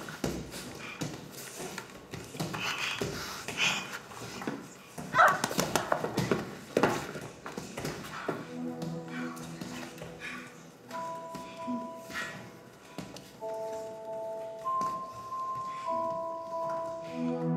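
Thuds of gloved MMA punches and bodies on a padded mat, with grunts and cries of effort. About halfway through, music comes in with soft sustained notes.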